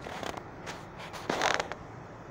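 A few short, irregular creaking and rubbing noises, the loudest about a second and a half in.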